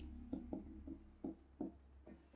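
Faint taps and scratches of a stylus writing a word on an interactive smart-board screen, a handful of short separate strokes.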